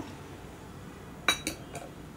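A metal ladle or spoon clinks sharply once against the metal cooker pot, with a short ringing, followed by a couple of lighter knocks.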